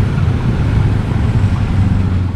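Steady low rumble of street traffic, with a low engine hum that grows stronger near the end.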